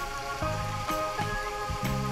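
Background music with held notes and a steady bass line changing about every half second.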